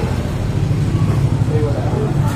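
Steady low engine hum of street traffic, with faint voices in the background.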